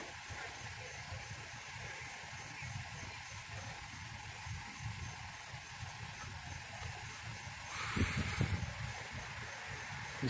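Quiet outdoor street background: a low steady rumble with a faint hiss, and a brief rustling noise about eight seconds in.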